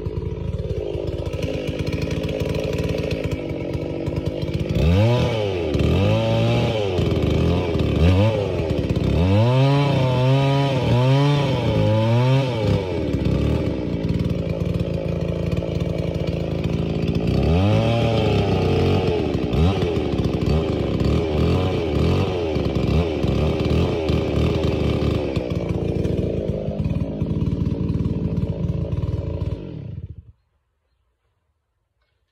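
Stihl 066 chainsaw, port-matched with opened-up piston windows, running at high revs while cutting a big log. Its pitch swings up and down about once a second through two stretches of the cut, and holds steadier in between and near the end.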